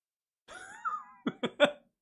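A man laughing: a drawn-out voiced sound about half a second in, then three quick, sharp bursts of laughter.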